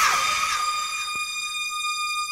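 The outro of a 1989 acid house track: a single high, siren-like synthesizer tone held steady with no beat under it. A hissing sweep behind it fades away in the first half second.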